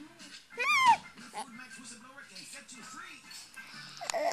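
A baby's short high-pitched squeal, rising then falling, about half a second in, over quieter background music.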